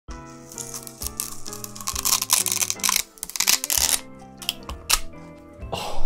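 Background music, with loud crunching and tearing of raw sugar cane being bitten and chewed over it. The crunching is densest in the first four seconds, with a few single cracks after that.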